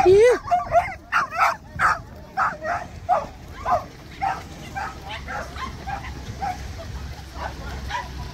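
Dog barking and yipping in quick succession, about two to three barks a second. The barks are loudest in the first few seconds and grow fainter.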